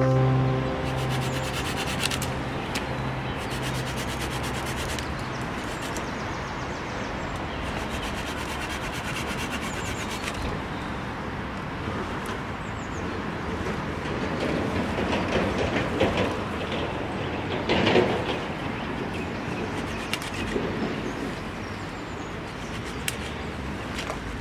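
Bahco Laplander folding pruning saw cutting through green branches of a fallen tree: a long rough run of rasping strokes, with twigs rustling, loudest about three-quarters of the way through. Background guitar music fades out in the first few seconds.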